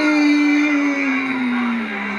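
A single voice holding one long drawn-out 'ooh', its pitch sliding slowly downward.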